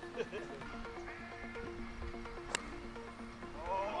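Background music of held, stepping tones, with one sharp click about two and a half seconds in: a golf club striking the ball off the tee.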